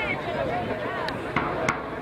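Players' voices shouting and calling across a rugby pitch, with two short sharp clicks about a second and a half in.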